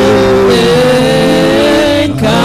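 Live gospel band music: singers and keyboard holding one long sustained chord.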